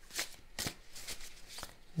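A deck of tarot cards being shuffled by hand: a quick, irregular run of soft papery slaps and flicks as cards drop from the deck.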